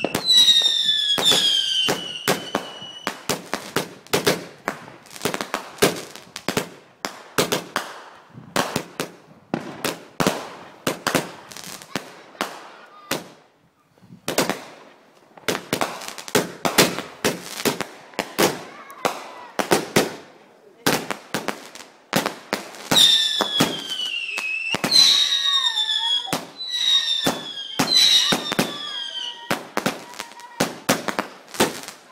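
Garden fireworks going off in quick succession: many sharp bangs and crackles, with high whistles that fall slightly in pitch at the start and again in the last seven seconds. There is a short lull about halfway through.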